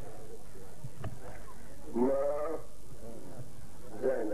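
A man's voice intoning one short, drawn-out phrase about two seconds in, otherwise pausing, over a steady background hiss and low hum.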